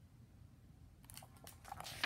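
Pages of a hardcover picture book being turned: a soft paper rustle and swish starting about halfway through and loudest at the end, after a near-silent first second.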